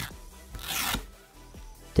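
Adhesive-backed disposable nail file strip being peeled off its plastic file board. A light click, then a short rasping rip about half a second in.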